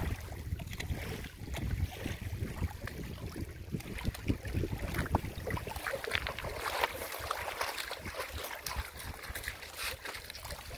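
Wind buffeting the microphone over lapping lake water, the wind dropping away about halfway through. In the second half, choppy splashing as a dog wades through the shallows carrying a log in its mouth.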